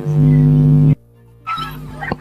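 A steady held tone with several even overtones, its pitch unchanging, which cuts off abruptly about a second in. It comes back more faintly for the last half second.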